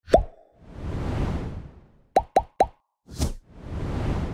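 Sound effects of an animated subscribe button: a sharp pop, a whoosh that swells and fades, three quick pops in a row, then another pop and a second whoosh.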